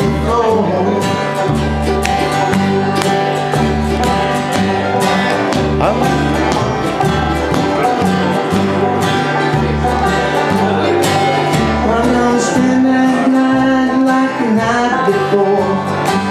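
Live bluegrass band playing: strummed acoustic guitar, five-string banjo and upright bass, with the bass notes pulsing at a steady beat.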